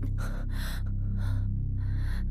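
Four short, sharp breaths or gasps of a person straining, over a low, sustained musical drone.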